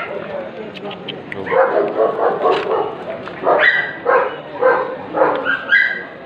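A dog barking in a run of short yips, about two a second, starting about a second and a half in, with voices around it.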